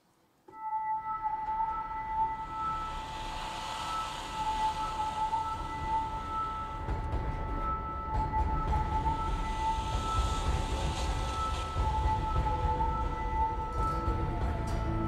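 A live band begins the instrumental introduction to a song: a held chord of steady high tones comes in suddenly about half a second in, and fuller low accompaniment builds beneath it from about six seconds on.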